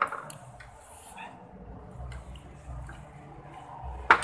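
Faint eating sounds: wet squishing and a few small clicks as fried instant noodles are mixed and picked up by hand from a plate, over a low steady hum.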